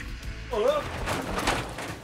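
A double-decker bus jolting over a speed bump taken too fast: about a second of clattering rattle from the bus body, just after a short cry about half a second in.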